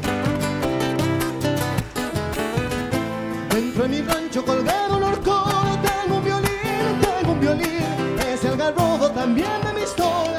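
A chacarera played on Spanish acoustic guitars over a steady bombo legüero drum beat. A wavering lead melody line comes in a few seconds in.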